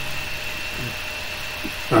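Steady background hum and hiss with a thin, constant high-pitched whine, in a pause between spoken phrases.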